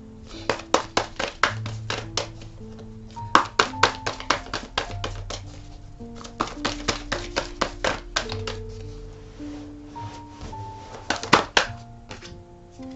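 Clusters of rapid, sharp clicks and taps, several times over, as a tarot deck is shuffled by hand; the loudest burst comes near the end. Soft background music of sustained plucked notes plays underneath.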